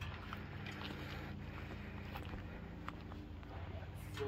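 Footsteps in flip-flops on grass and light clicks of a plastic bottle and hose being handled, over a steady low hum.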